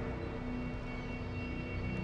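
Tense background score: a few quiet sustained tones held over a steady low rumble, with no sharp sounds.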